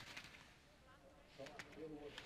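Faint scrape of ski edges on hard-packed snow through a slalom turn right at the start, then a distant voice calling out about a second and a half in.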